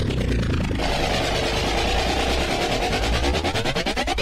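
Techno music from a club DJ set: a dense, steady synth texture over a deep bass, with a brighter buzzing layer coming in about a second in.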